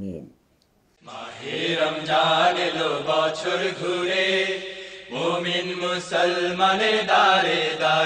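A sung Bengali Ramadan song (nasheed), the programme's theme, begins about a second in after a brief pause, with a slow chanted melody.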